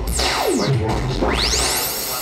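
Electronic music sound effects over a club sound system: a long sweep falling in pitch, then a rising sweep that leads into the beat.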